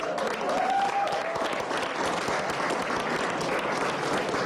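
A group of people applauding steadily, with a brief voice rising over the clapping near the start.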